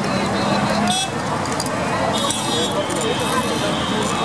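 Busy roadside ambience of traffic and background chatter, with a sharp clink about a second in and more metallic clinking in the middle as glasses and a hand lemon press are handled.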